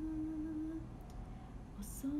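A woman humming one steady held note with her lips closed; the hum stops a little under halfway through. A short hiss comes just before the end.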